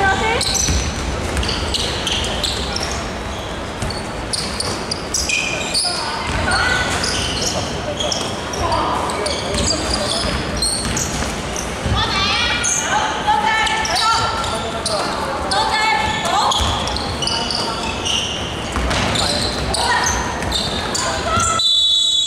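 Basketball game in a large, echoing sports hall: a basketball bouncing on the hardwood court, sneakers squeaking on the floor, and players calling out to one another.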